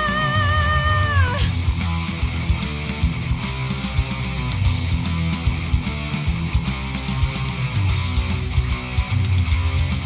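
A female metal singer holds a high belted note with vibrato over a heavy metal backing, and lets it fall off about a second and a half in. The instrumental part then carries on alone, with distorted electric guitars, bass and fast drums.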